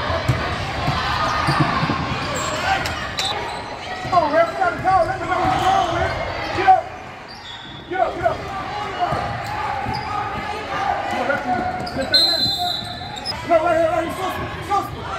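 Basketball dribbled on a hardwood gym floor during play, with players' and spectators' shouts and calls echoing in the large gym.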